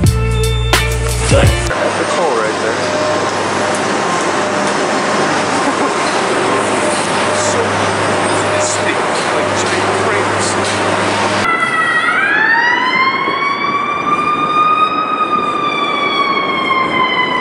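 Ambulance siren wailing, starting about three-quarters of the way through: one long wail that rises quickly and then falls slowly. Before it, steady city street and traffic noise follows a brief bit of background music at the start.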